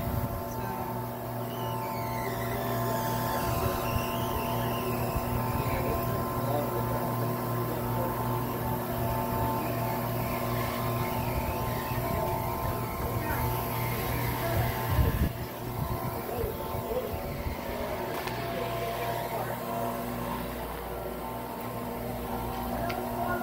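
A wild blueberry sorting line's electric motors and conveyor running, giving a steady hum of several held tones.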